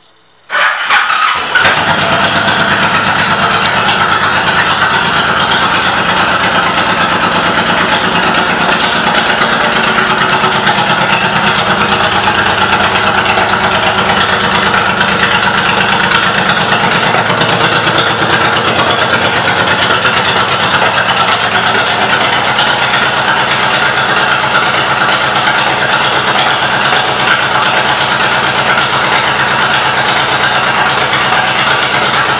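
Honda VTX1800R's V-twin engine starting up about half a second in, then idling steadily through aftermarket Vance & Hines exhaust pipes.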